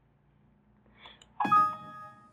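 Windows XP warning chime: one bright ding, a few ringing tones at once that fade out within about half a second. It sounds as a warning dialog box pops up asking whether to save the changed configuration.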